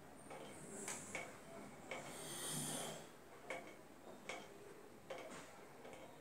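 Quiet room tone with a few faint, scattered clicks and a soft breath about two seconds in.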